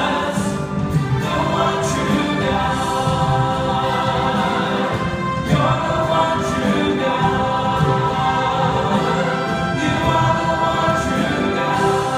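Church choir and worship singers singing a gospel worship song together with instrumental accompaniment, in sustained chords. New phrases start about five and a half seconds in and again near ten seconds.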